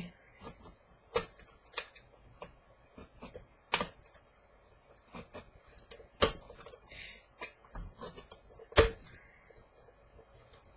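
X-Acto knife blade cutting around the top of an aluminium soda can: irregular sharp clicks and ticks as the blade works through the thin metal, with a short scrape about seven seconds in. Two louder snaps come just past halfway and near the end.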